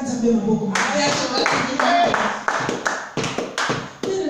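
Hands clapping in a steady beat, about four claps a second, starting just under a second in, over a person's voice.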